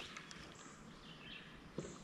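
Quiet outdoor background with a few faint bird chirps, and a short soft knock near the end.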